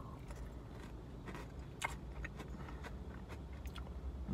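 Someone chewing a Kit Kat wafer bar with melted chocolate on the fingers, small scattered wet clicks of mouth and lips, over a low steady hum.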